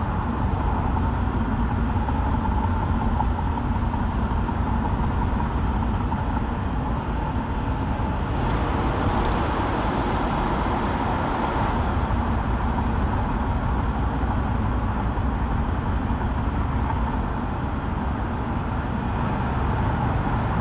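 Steady road and engine rumble of a car driving through city traffic, heard from inside the car, getting a little louder and hissier for a few seconds near the middle.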